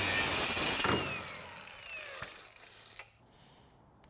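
Angle grinder with a cut-off wheel cutting through the steel of a car's front roof pillar for about the first second. It then lets off and winds down with a falling whine, fading to near quiet near the end.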